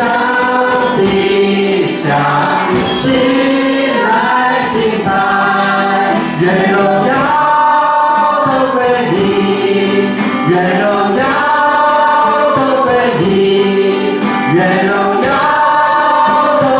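A woman leading group singing of a slow Mandarin worship song, accompanied on an electronic keyboard. The singing runs in arched phrases with long held notes.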